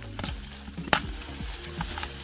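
Small hand pick scraping and chipping into a dry bank of earth and stone, loose soil and grit crackling as it falls, with one sharp strike about a second in.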